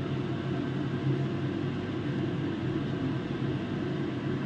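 A steady low mechanical hum with an even hiss underneath, unchanging throughout.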